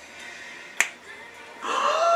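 A single sharp click about a second in, then a woman's drawn-out 'ooh' near the end, loud and held on one arching note.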